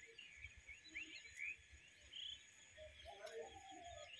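Faint outdoor ambience: birds chirping in scattered short calls over a steady low hiss.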